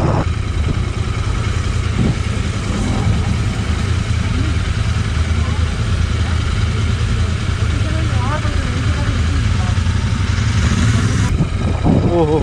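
Royal Enfield 650 parallel-twin motorcycle engines, several bikes together, growling at low revs in a steady, deep, even drone.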